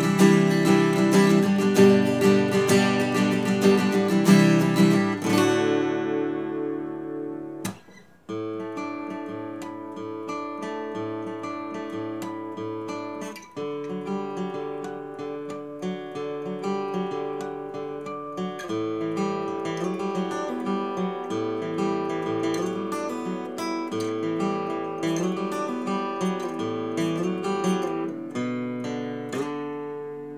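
D'Angelico Mercer SG100 grand auditorium acoustic guitar, with a solid Sitka spruce top and solid sapele back and sides, strummed for about five seconds, the last chord ringing out. After a short break about eight seconds in, it is picked in single notes and chords, fading near the end.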